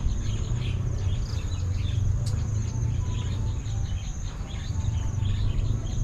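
Insects trilling in a steady, high, finely pulsing drone, with faint chirps over it and a steady low rumble underneath.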